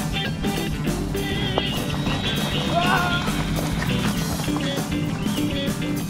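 Background music, a guitar-led track playing steadily.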